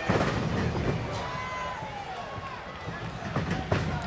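Arena crowd noise with sharp open-hand chops landing on a wrestler's bare chest: one right at the start and two close together near the end.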